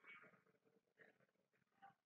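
Near silence: faint, indistinct background sounds under room tone.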